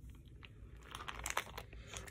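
Faint crinkling of a clear plastic bag being handled and pulled open around a wax melt, a few scattered soft crackles.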